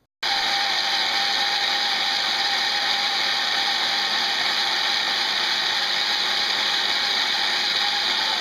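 Corded electric chainsaw in a lumber-milling frame, cutting lengthwise along a log. It starts suddenly just after the beginning and runs at one steady level and pitch, with no revving.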